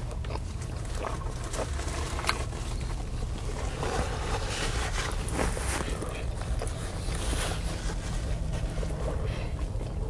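Close-miked chewing and mouth sounds of a man eating a chaffle breakfast sandwich, over a steady low rumble. A paper napkin is wiped across his mouth in the middle.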